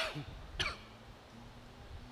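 A person coughing twice in quick succession, two short coughs about half a second apart, clearing the throat.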